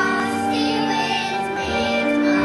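Children singing together as a group to musical accompaniment, with sustained held notes.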